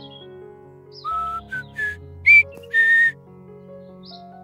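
A whistle blown in five short toots starting about a second in, each a steady, breathy note. The first four step up in pitch to the loudest, highest toot, and the last is a little lower and longer. Soft background music plays throughout.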